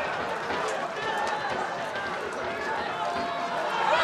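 Live sound of an open-air football match: scattered, distant shouts and calls of voices across the ground over an even background hiss. It grows a little louder near the end as an attack reaches the goal area.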